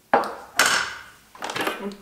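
Kitchen handling sounds: a knock just after the start, then a louder clatter that fades over about a second, as a spatula is set down and the Thermomix's stainless steel mixing bowl is taken up.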